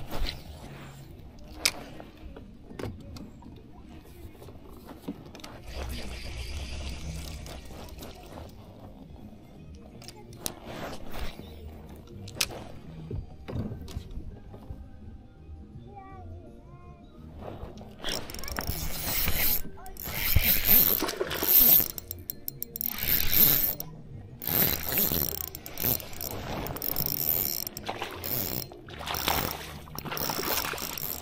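Spinning reel being cranked, a mechanical whirring and clicking of its gears, with louder bouts of sound in the second half.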